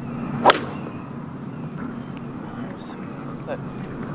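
A three wood striking a golf ball off the fairway: one sharp crack about half a second in, over steady background noise.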